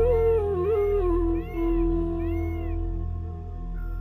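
Instrumental music: a flute melody with bending, sliding notes that settles on a long held note partway through, over a steady drone. Short high arching chirps sound about twice a second and stop shortly before the end.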